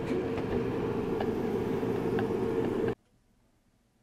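Steady mechanical hum with a constant low whine and a few faint ticks, cutting off abruptly about three seconds in.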